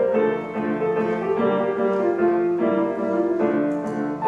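Grand piano played solo, a steady run of notes in the middle register changing about three times a second.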